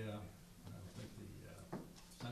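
Faint, indistinct speech in a reverberant hall, loudest at the very start. A brief sharp squeak or knock comes near the end.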